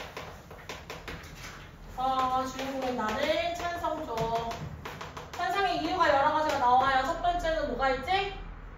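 Chalk tapping and scraping on a blackboard as words are written, a run of short clicks in the first two seconds, then a person speaking for the rest.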